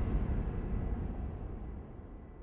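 Low rumble fading out steadily: the decaying tail of a deep boom hit that ends the intro music.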